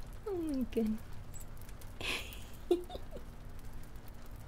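A woman's giggles and squeals of being tickled. There is a falling squeal near the start, then short squeaks and a breathy laugh about two seconds in.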